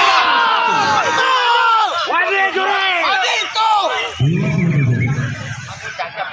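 A crowd of spectators shouting and yelling at once, many voices overlapping, as a songbird contest round begins.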